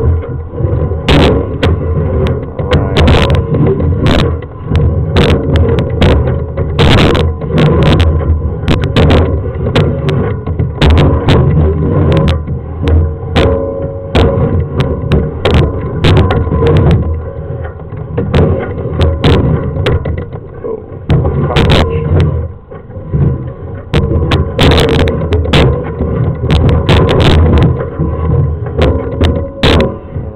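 Sewer inspection camera push cable being fed by hand into a lateral sewer line. Frequent knocks and rattles of handling run over a steady low rumble.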